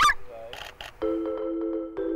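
A short, loud squeaky honk rising in pitch, followed about half a second later by a couple of brief squeaks, then background music with sustained mallet-like chords.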